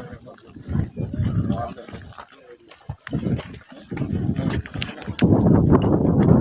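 Footsteps of several people crunching and scuffing over loose stones and rocky soil, irregular and uneven, with voices talking among the group. It gets louder about five seconds in.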